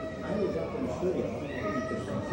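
Chatter of visitors in a hall, with a high-pitched, drawn-out voice heard twice: a child's cries, near the start and again in the second half.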